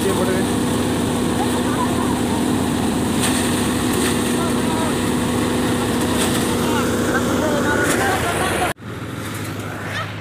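Paddy threshing machine running: a loud, steady mechanical drone with a constant hum. It cuts off abruptly just before nine seconds in, and a much quieter low hum follows.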